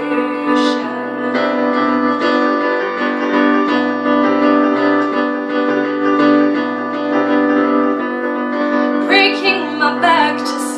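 A woman singing to her own keyboard accompaniment of sustained piano chords. Her voice comes in just after the start and again about nine seconds in, with only the chords between.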